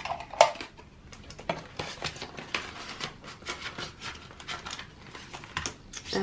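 Handling a ring binder of clear plastic cash envelopes: a run of small clicks, clinks and crinkles as plastic pages are turned and coins and notes are moved, with one sharper click about half a second in.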